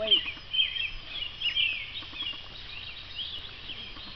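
Songbirds chirping and singing in a steady, busy chorus of short high-pitched calls, with a brief voice right at the start.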